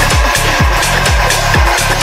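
Electronic house/techno dance music: a steady four-on-the-floor kick drum at about two beats a second, with hi-hat-like percussion ticking above it.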